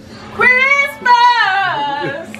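A woman's high-pitched, drawn-out vocal cry in two long stretches, the second sliding down in pitch, as she breaks into laughter.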